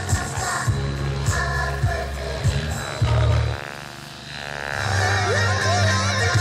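Music with a heavy bass beat; just past the middle the bass drops out and it goes quieter for about a second, then the beat comes back in.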